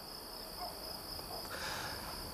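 Crickets chirping in a steady high trill.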